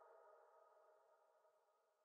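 Near silence: the faint tail of the song's final keyboard chord dying away, gone just before the end.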